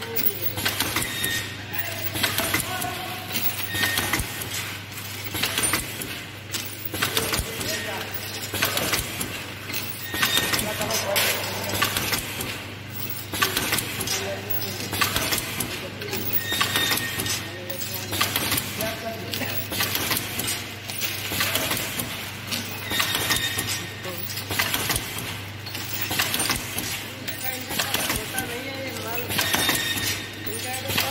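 Automatic vertical pouch packing machine running: repeating mechanical clicks and clatter over a steady low hum.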